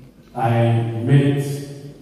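Speech only: a man's voice, one drawn-out phrase into a handheld microphone, heard through the PA, between two short pauses.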